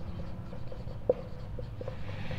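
Marker pen writing on a whiteboard: faint strokes, with one brief louder sound about halfway through.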